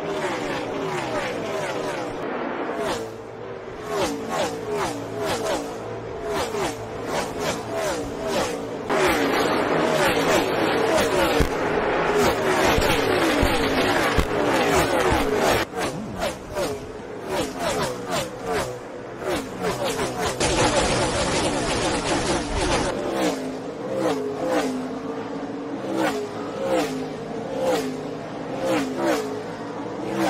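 NASCAR Cup Series stock cars with V8 engines racing past at speed, one after another. Each engine note slides down in pitch as the car goes by, with some notes rising as cars accelerate.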